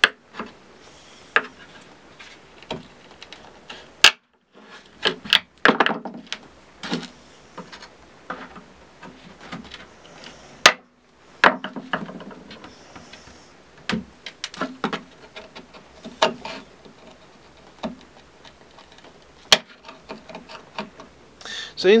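Flathead screwdriver prying old metal staples out of a wooden TV cabinet: irregular sharp clicks and knocks with short scrapes of the blade against the wood.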